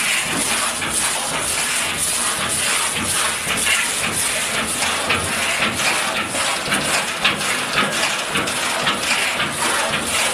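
Fully pneumatic stencil cleaner running: a steady hiss of compressed air and spraying cleaning liquid inside its stainless-steel cabinet.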